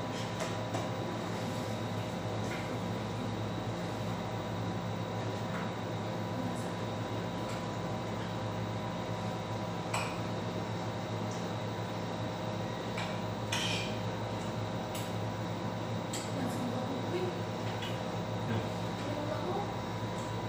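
Cutlery clinking and scraping on plates during a meal: scattered light clinks a few seconds apart, over a steady background hum.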